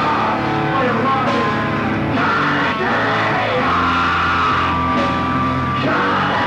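Live punk-metal band playing loudly: electric guitars, bass and drums, with some singing.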